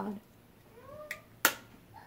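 A plastic makeup palette compact clicking shut: a faint click, then a sharp, louder snap about a second and a half in. Just before, a short rising pitched call sounds.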